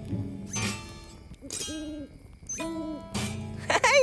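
The tail of a children's theme jingle fades out, then two cartoon owl hoots sound about a second apart. Near the end comes a dull guitar twang that sounds off, as if the guitar is not working right.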